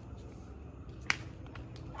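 A single sharp click about a second in, over a quiet low background hum.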